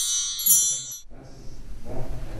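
Metal percussion chimes ringing with a shimmering high tone, struck again about half a second in, then cut off abruptly about a second in, leaving low room noise.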